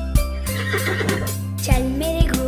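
Instrumental children's song music with a steady drum beat. A horse whinny sound effect quivers over it for about a second in the middle.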